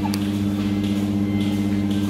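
Steady low machine hum that holds a few even pitches and does not change.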